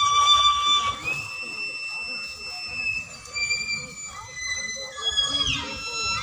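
Solo violin playing a slow melody: a held note, then a long high note sustained for about two seconds, then shorter notes and a quick downward slide near the end.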